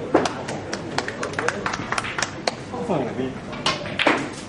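Snooker balls colliding after a shot: a quick irregular run of sharp clicks as the cue ball strikes the balls at the top of the table and they knock into each other and off the cushions. A man's voice comes in briefly about three seconds in, followed by one more click.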